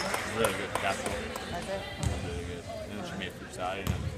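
Basketball bouncing on a hardwood gym floor, two thumps about two seconds apart, as the shooter dribbles at the free-throw line, with spectators' voices close by.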